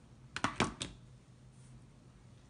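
A quick run of three or four small plastic-and-metal clicks about half a second in, from crocodile-clip test leads being handled on a small potentiometer's pins. Under them runs a faint steady low hum.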